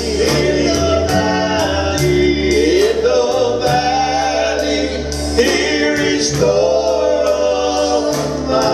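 Gospel worship song: singing over sustained bass and keyboard notes, with a steady cymbal beat ticking throughout.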